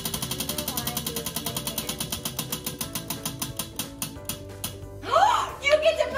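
A prize wheel spinning down: its pointer clicks against the rim pegs, rapid at first, then slower and slower until the wheel stops about five seconds in. Right after, excited voices shout.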